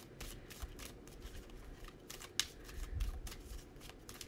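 A deck of tarot cards being shuffled by hand: a run of soft, irregular card clicks, with one sharper snap about two and a half seconds in.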